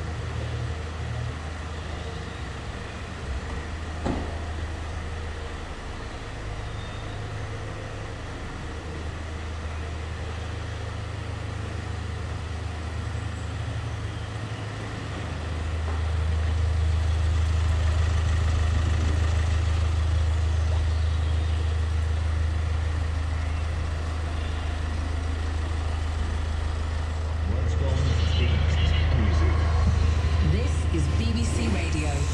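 Low, steady hum of a Hyundai Tucson's 1.7 CRDi four-cylinder diesel engine idling, louder about halfway through.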